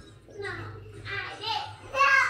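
A young child's playful wordless vocal sounds: two short high-pitched calls.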